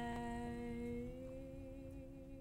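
The song's final chord held by hummed voices in close harmony, a few steady notes fading out together, with some dropping away about a second in.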